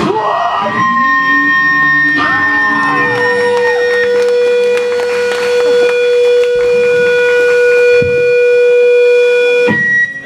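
Amplifier feedback ringing on after a hardcore punk song stops: a few steady whining tones, held for seconds and shifting in pitch every couple of seconds, cut off suddenly shortly before the end.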